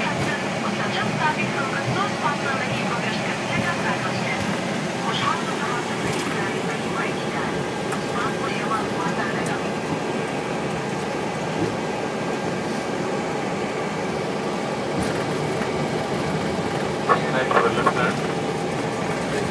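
Steady cockpit noise of an airliner taxiing after landing: engines at taxi power and airflow make a constant hum. Faint voices come and go over it, with a short louder burst near the end.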